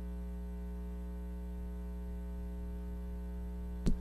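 Steady electrical mains hum, a low buzz with many even overtones. A single short click comes near the end.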